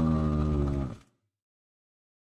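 A man's drawn-out "uhh" of hesitation, held on one steady pitch and breaking off about a second in.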